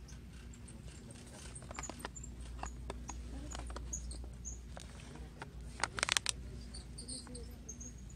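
A plastic candy pouch crinkling and rustling as it is picked up and turned over, with scattered crackles and a burst of loud crinkles about six seconds in.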